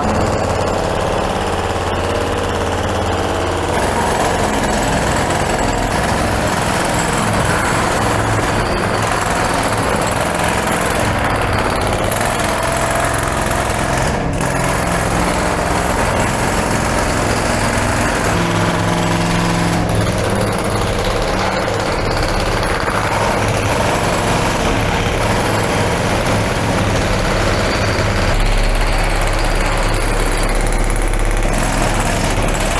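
Several pneumatic jackhammers breaking up concrete at the same time: a continuous, loud, overlapping clatter that echoes in the tunnel.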